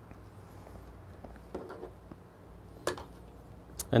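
A few soft clicks and light knocks as a small digital coffee scale is set down on the espresso machine's drip tray, over a faint steady low hum.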